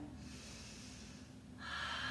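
A woman breathing audibly while holding a low lunge: a long, soft breath out, then a louder breath in near the end.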